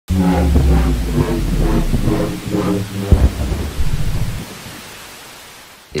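A loud, deep rumble over a steady hiss, with a pitched note pulsing about twice a second. About four seconds in it fades away.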